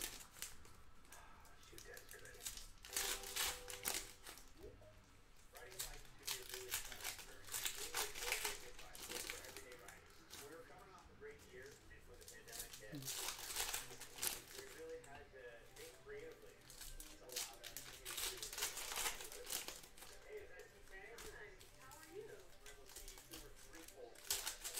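Foil trading-card pack wrappers crinkling and tearing open in repeated short bursts every few seconds, with cards shuffled in the hands between them.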